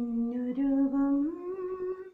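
A woman singing unaccompanied, holding long notes that step up in pitch twice, about half a second in and again past the middle, and fading just before the end.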